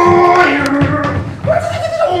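A man's voice imitating an aeroplane engine: one long held drone that dips in pitch, then jumps higher about one and a half seconds in. Running feet knock on the wooden stage floor.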